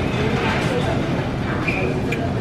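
Busy shop's background noise: steady ambience with faint, distant voices talking.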